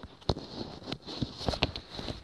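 Handling noise from a phone held close: irregular taps, knocks and rubbing on the microphone as it is moved about, over a faint steady hiss.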